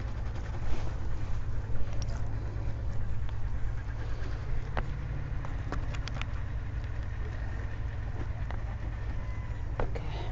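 A steady low rumble runs under the whole stretch, with a few faint, sharp clicks scattered through it.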